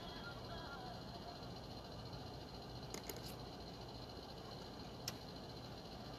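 Quiet studio room tone with a steady low hum, as the faint last of a song fades out in the first second. A few soft clicks come about three seconds in, and one more near the five-second mark.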